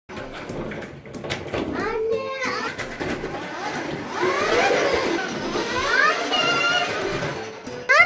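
A young child's voice calling out and vocalizing at play, over music.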